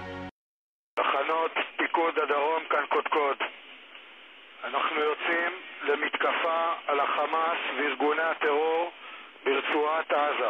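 A military commander's recorded address announcing an attack on Hamas, heard through a thin radio-like channel that cuts the lows and highs. Speech starts about a second in and goes on in phrases with short pauses.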